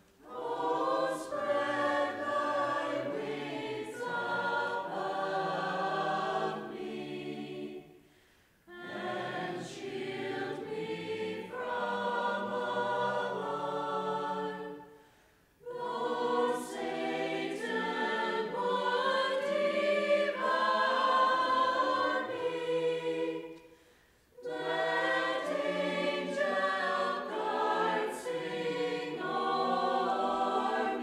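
Church choir singing a hymn in long phrases, with a short pause for breath between phrases three times.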